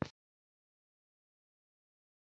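Silence: the sound track drops out completely just after the tail end of a spoken word at the very start.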